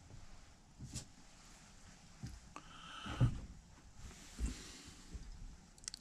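Quiet handling noises of hands and small tools working the rigging of a model sailing ship: scattered light clicks and knocks, the loudest knock about three seconds in and a quick pair of clicks near the end.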